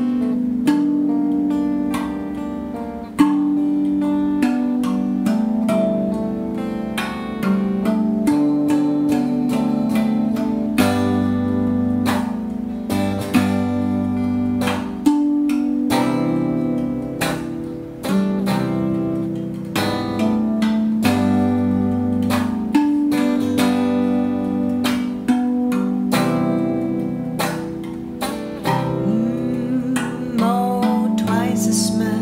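Instrumental passage of an electric guitar played with a clean tone over a RAV Vast steel tongue drum struck by hand, with no singing. Ringing, sustained notes, with new strikes every second or so.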